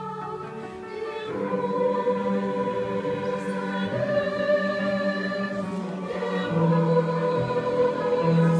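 Mixed choir singing slow, sustained chords with upright piano accompaniment, swelling louder about a second in.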